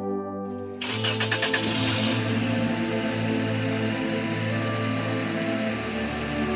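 Background film music with sustained synth notes; about a second in, a car engine is started with a short cranking burst and then keeps running quietly under the music.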